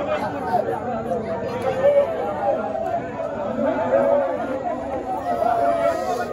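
Crowd chatter: many voices talking over one another.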